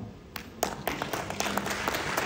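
Audience applauding: a few scattered claps about half a second in that quickly fill out into steady applause.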